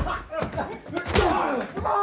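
Fist-fight sound effects: a few heavy punches and body slams landing, mixed with men's grunts and groans of effort and pain.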